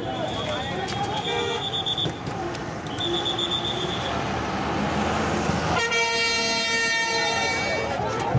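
Vehicle horns sounding over street crowd chatter and traffic noise. There are a few short high-pitched toots in the first four seconds, then one long, loud horn blast from about six seconds in.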